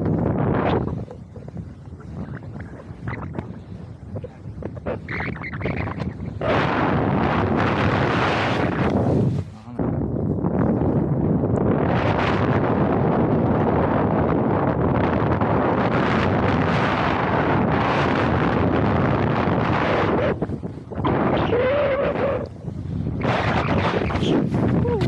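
Wind rushing over the camera's microphone during a downhill ski run, a loud steady rush that builds about six seconds in and eases off near the end.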